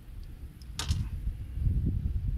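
A single sharp knock just under a second in, from a landing net and gear being handled on an aluminium bass boat's deck, with a few faint ticks, over a low rumble of wind on the microphone.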